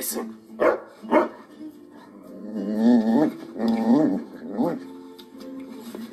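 A German shepherd barking twice in quick succession, then giving two longer, wavering vocal sounds, with music playing underneath.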